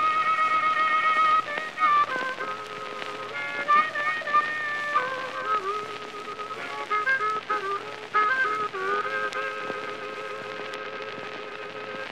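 Blues harmonica playing a wailing instrumental phrase of held notes that step between pitches, on an old, narrow-band recording with surface hiss.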